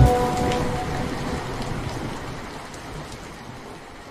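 Rain ambience, an even hiss with scattered drop ticks, left on its own as the music stops and fading steadily away; the last held notes of the music die out within the first second.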